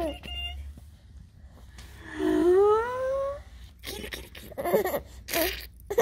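Baby about five months old vocalizing while being played with: one long, high coo that rises in pitch about two seconds in, then a few short vocal sounds near the end.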